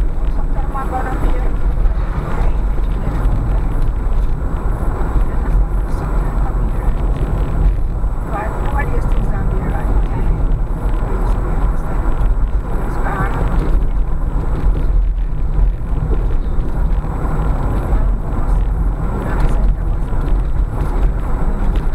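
A car driving at low speed, heard from inside the cabin: a steady low rumble of engine and tyres on the road. Faint voices come through now and then.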